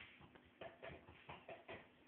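Faint soft taps and shuffling, a few short knocks spread across two seconds, over near silence.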